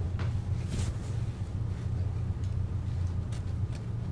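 A steady low hum runs throughout, with a few faint, soft scrapes of a spoon scooping seeds out of a halved cantaloupe.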